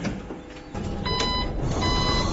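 Two electronic warning beeps from a driver-fatigue monitoring unit, a short one about a second in and a longer one just under a second later, over the steady engine and road rumble of a bus in motion.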